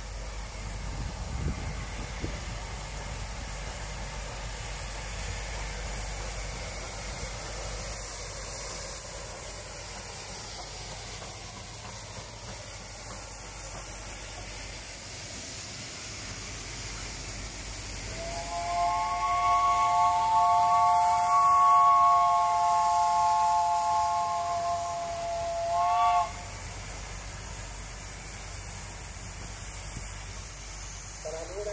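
Steam locomotive whistle giving one long blast of several notes sounded together, lasting about seven seconds and starting roughly two-thirds of the way in, ending with a brief rise in pitch. Before it, a steady hiss of steam.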